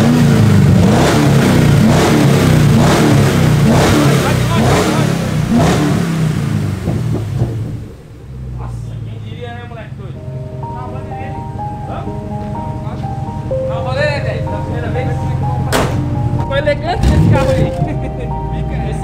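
Chevrolet Camaro's 6.2-litre V8 revved in repeated blips, heard close to the open engine bay, for the first several seconds. After a sudden drop about eight seconds in, music plays over the engine idling low.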